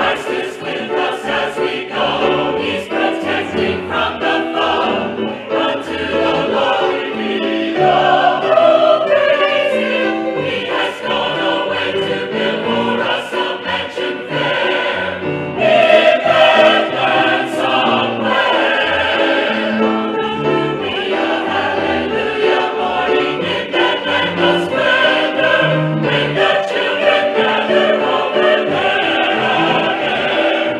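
Mixed choir of men's and women's voices singing a gospel song in parts, accompanied by piano.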